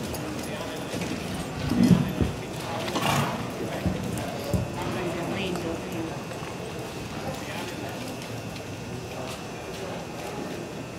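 Cutting horse's hooves scuffing and thudding in soft arena dirt as it stops and turns to hold a calf, with a couple of louder knocks about two and three seconds in. Voices can be heard in the background.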